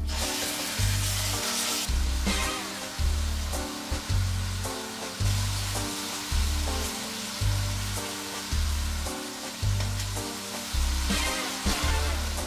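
Minced chicken breast sizzling in hot oil in a stainless steel pan, loudest in the first two seconds as the meat goes in. Background music with a steady bass beat plays over it.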